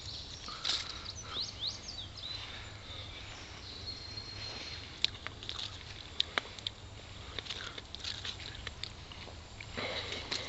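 Rustling and snapping of blackberry brambles and leaves as berries are picked by hand, with a few sharp clicks about five to six and a half seconds in. A bird chirps briefly near the start.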